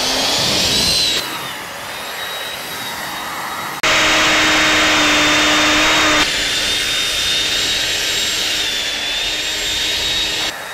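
Electric motors of a hovering model rocket drone, a steady high whine that rises in pitch in the first second as it throttles up to lift off, then holds steady. It is much louder for a couple of seconds from about four seconds in.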